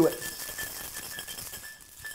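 Metal cocktail shaker whip-shaken with a little crushed ice: a quick rattle of ice against the tins that grows fainter. It is a short shake for a little chill and dilution before the drink is packed over crushed ice.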